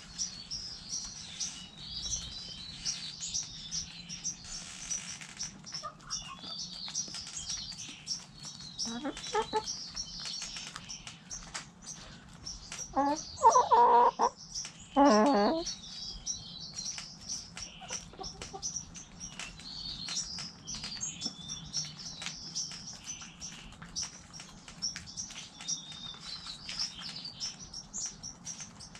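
Backyard chickens foraging around the microphone: many quick taps of beaks pecking, over continuous high bird chirping. A little past halfway come two loud chicken calls close together, the first about a second long and the second shorter.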